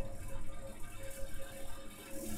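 Faint room tone with a low, steady hum.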